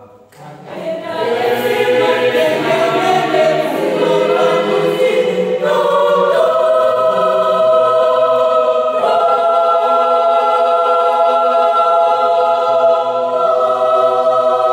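Mixed-voice choir singing a cappella in harmony. The voices break off briefly at the start and come back in under a second later, then move through a few chord changes and hold long sustained chords from about six seconds on.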